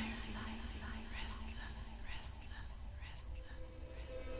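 Quiet breakdown in an electronic trance track: a single low synth note held steady under soft, breathy swishes that rise about once a second, with no beat.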